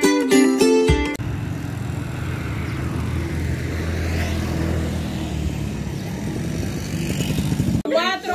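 Plucked-string intro music that cuts off about a second in, followed by steady outdoor street background noise: a low, even rumble with no distinct events.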